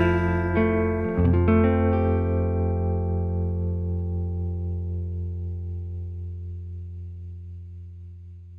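Closing bars of a slow, vintage-country-style song: a few last guitar notes in the first second or so, then the final chord rings on and fades away slowly.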